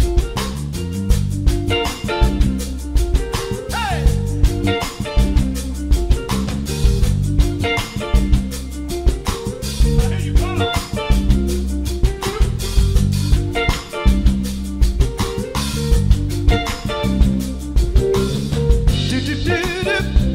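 Live soul and R&B band playing a groove on electric bass, drum kit, electric guitar and keyboards, with a prominent bass line and a steady drum beat.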